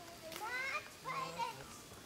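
A child's high-pitched voice calling out twice in short bursts, the pitch rising within each call.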